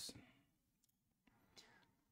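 Near silence: room tone, with the fading end of a spoken word at the very start.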